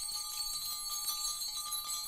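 Music: jingling bells and small ringing bells in a jazz-fusion piece, a steady shimmer of high ringing notes.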